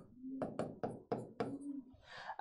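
Marker pen writing on a whiteboard: a quick run of about seven short taps and strokes as figures are written.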